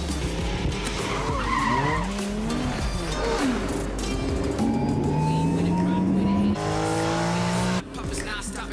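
Porsche sports cars racing: tyres squealing and skidding in the first half, then engines revving up in two rising runs, the first cut off sharply, under music.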